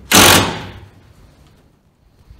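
A brief, loud burst from a handheld power driver driving a fastener overhead into the framing, lasting about half a second and dying away within a second.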